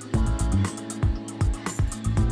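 Background music with a steady beat, about two beats a second, over sustained instrument tones.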